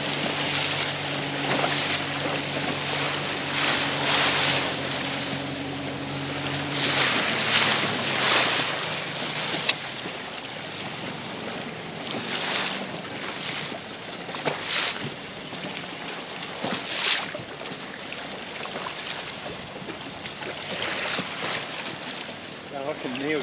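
Wind gusting on the microphone over the wash of choppy sea water around a small boat. A low steady engine hum runs beneath it and fades away about seven or eight seconds in.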